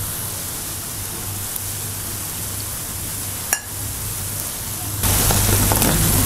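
Mixed dal-and-rice pakoras deep-frying in hot oil in a kadai: a steady sizzle. There is a single sharp click about three and a half seconds in, and the sizzle grows louder about five seconds in.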